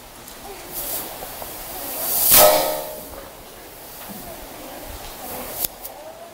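Rustling and shuffling as people move about, with a louder burst of rustling noise about two seconds in and a couple of sharp clicks near the end.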